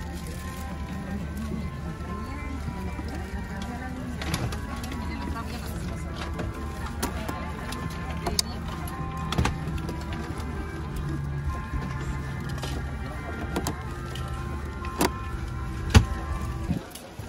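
Airliner cabin ambience at the gate during boarding: a steady low cabin hum under soft background music and indistinct passenger voices, with a few sharp clicks and knocks, the loudest near the end.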